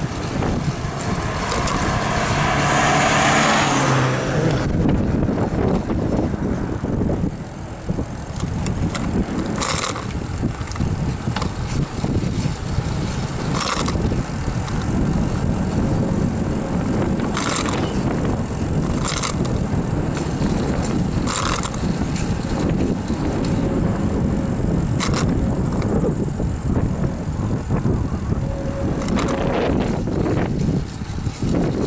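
Wind rumble on the microphone and road noise from a bicycle riding along an asphalt road. In the first few seconds an oncoming car swells up and passes, and short sharp clicks come every few seconds after that.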